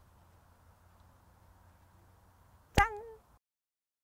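A faint steady hiss, then near the end a single short pitched hit with a sharp attack, its tone sagging slightly as it fades within about half a second, followed by dead silence.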